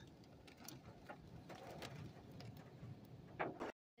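Near silence: a faint steady hiss with a few light clicks and a brief slightly louder noise near the end, then the sound cuts out completely just before the end.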